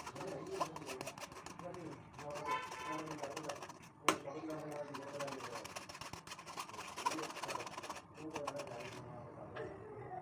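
Mango juice being strained through a mesh sieve into a steel pot, with a spoon clicking against the sieve and pot rim and one sharp knock about four seconds in. Faint voices run underneath.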